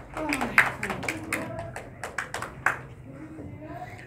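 Indistinct talking in a hall, with a few scattered hand claps.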